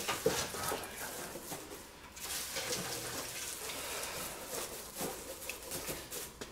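Dry straw rustling and crackling as it is tipped from a metal bucket into a wooden box and pushed in by hand.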